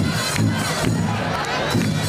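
Large hand-held frame drums beaten in a steady rhythm of about two beats a second, under a crowd cheering, with children shouting.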